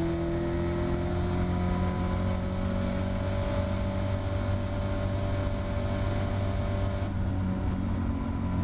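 Caterham Seven race car's engine pulling hard at full throttle down a straight, its note climbing slowly in pitch, heard from the open cockpit with wind and road rush. About seven seconds in the rushing noise drops and the note changes as the car comes off its top speed.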